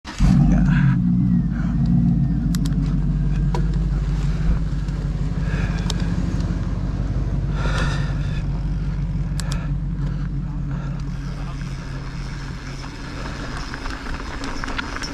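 Mountain bike riding along a wood-chip dirt trail: a steady low rumble of tyres on the ground and wind on the camera microphone, with a few sharp clicks and rattles from the bike.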